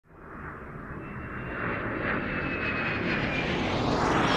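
Roar of a jet airplane swelling steadily louder from silence, with a faint high whine held through the middle.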